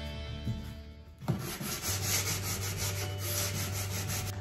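Medium-grit sanding block rubbed in short back-and-forth strokes over the painted surface of a wooden hutch, distressing the paint. The strokes thin out for a moment and pick up again about a second in.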